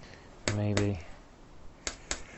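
Two sharp clicks a quarter second apart with a short, low hum of a man's voice between them, then two more sharp clicks near the end.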